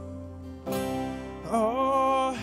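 Live worship band music: an acoustic guitar chord is strummed about two-thirds of a second in, and a sung note with vibrato comes in about halfway through and is held.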